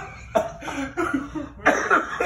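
A person coughing in several loud, sharp bursts, mixed with laughter. The strongest cough comes near the end.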